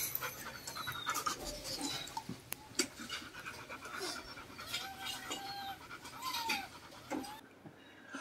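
Rottweiler bitch panting softly just after giving birth, with a few thin, whining squeaks that rise and fall around the middle, likely from the newborn puppies.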